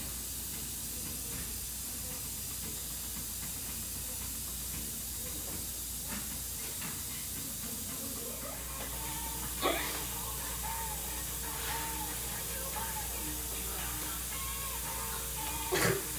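Steady hiss of a dental suction line running during a tooth extraction, with a short click about ten seconds in and a few faint whistling squeaks after it.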